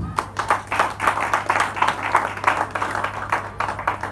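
Congregation clapping hands: many quick, overlapping claps for a few seconds.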